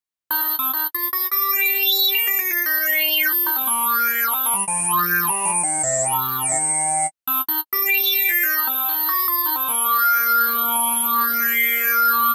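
Spectrasonics Omnisphere software synth, played as a series of changing chords over a falling bass line, then a held chord. The sound runs through a low-pass and a band-pass filter in parallel. The mod wheel sweeps the shared filter cutoff, so bright overtones rise and fall over the notes. The sound breaks off briefly about halfway through.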